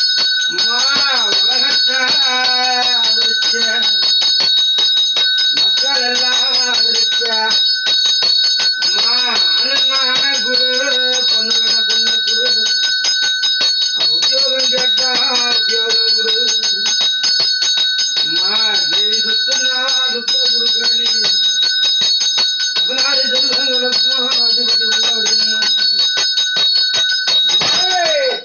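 A puja bell rung rapidly and without pause, its ringing steady and bright, cutting off right at the end. Over it a man chants in drawn-out, wavering phrases with short breaks between them.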